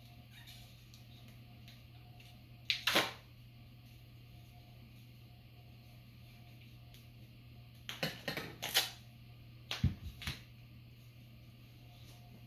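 Duct tape pulled off the roll in short ripping strips as it is wound around a broom handle: one pull about three seconds in, a quick run of several pulls around eight to nine seconds, and two shorter ones near ten seconds.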